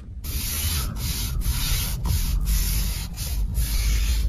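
A steady rasping rub, like fabric or a hand scraping against something close to the microphone, broken by brief gaps about twice a second.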